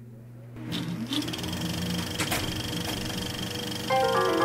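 A small motor-driven mechanism spins up about a second in, then runs with a steady whir and a fast, even clatter, with a couple of sharp clicks.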